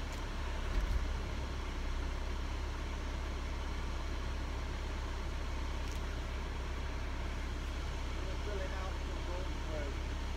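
Steady low rumble inside a stationary car's cabin, with a faint voice near the end.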